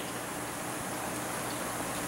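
Steady, even room hiss with no distinct event.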